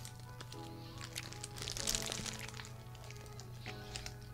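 Quiet background music of slow held chords that change every second or so, with faint crinkling of a paper sandwich wrapper and a bite into a fried chicken sandwich.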